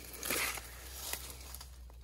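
Light rustling of dry twigs and leaves on a cut-back shrub stump as they are handled, loudest as a soft brushing noise about half a second in.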